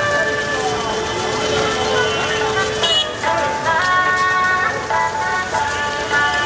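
Busy city street sound: crowd voices and road traffic, with music of long held notes stepping from pitch to pitch playing over them.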